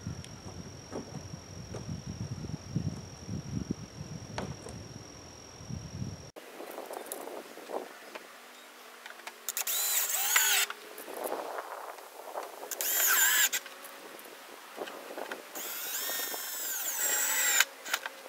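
Light knocks and handling of parts on a plastic barrel lid. Then a cordless drill driving screws into the lid to fasten the door hardware, in three short runs of rising motor whine, the last and longest about two seconds.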